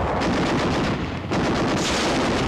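Rapid machine-gun and rifle fire, a dense continuous din of shots with a brief lull a little over a second in.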